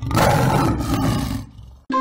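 Silver Lion online slot's lion-roar sound effect as a wild symbol lands: one roar about a second and a half long that fades away.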